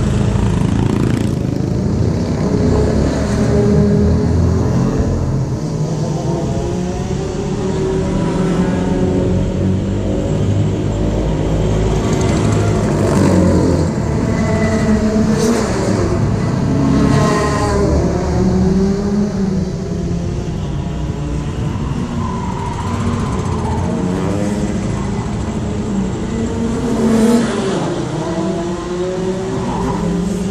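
A motor engine running loudly and continuously, its pitch wavering up and down unevenly as the revs change, with a brief louder rise near the end.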